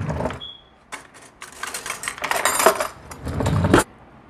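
A fork working at food on a plate: a short clink near the start, then a couple of seconds of scraping and rustling as a forkful of enchilada with shredded lettuce is cut and scooped up, stopping suddenly just before the end.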